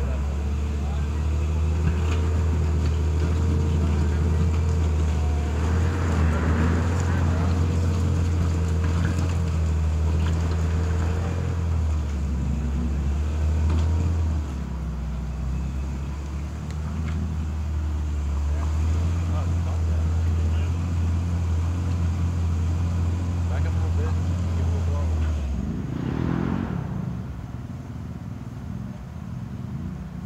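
Side-by-side UTV engine running steadily at low revs as it crawls up a rocky hill, a deep drone that drops away about 25 seconds in.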